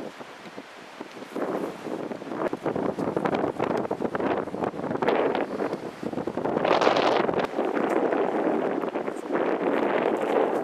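Wind gusting across the camera microphone. After a quiet first second it becomes a rushing noise that rises and falls, loudest a little past the middle.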